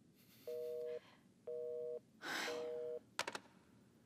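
Telephone busy tone from a corded phone handset after the other party has hung up: three half-second two-tone beeps, one a second. A breath comes about two seconds in, and a few quick clicks near the end as the handset is taken from the ear.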